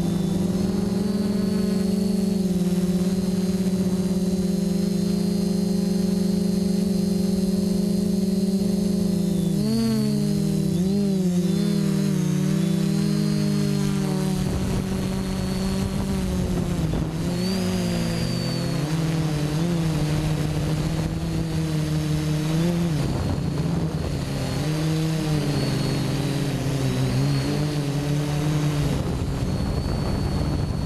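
Quadcopter's electric motors and propellers droning loudly, heard from the camera on board. The pitch holds steady for about the first ten seconds, then wavers up and down as the throttle changes, with a rougher, noisier sound in the second half.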